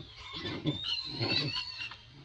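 Macaque vocalising: short low grunts, with a thin, high-pitched squeal drawn out for about a second over the second half.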